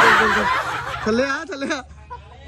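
A person laughing in a short burst, then a brief wordless voice sound about a second in.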